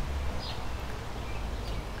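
Quiet outdoor background: a low steady rumble with a couple of faint, brief bird chirps, one about half a second in and one near the end.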